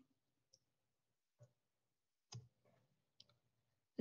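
Near silence with a few faint, brief clicks scattered through it.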